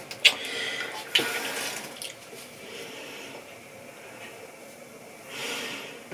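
Soft handling noises: two small clicks and a brief hiss in the first two seconds, then faint room noise with a short soft hiss near the end.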